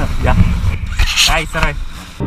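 A man talking, briefly near the start and again in the second half, over a steady low rumble.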